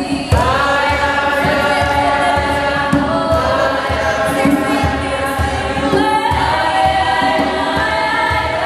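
A congregation of young people singing a gospel chorus together, unaccompanied, several voices holding long notes in harmony, with low thuds beneath the singing.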